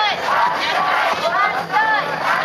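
A group of children in a festival procession shouting calls together over crowd noise, many high voices in short rising-and-falling shouts.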